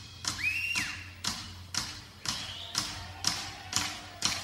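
Finger snaps keeping time at about two a second, counting in the song before the vocal enters, over a low steady hum from the stage amplification. A brief high whistle rises and falls about half a second in.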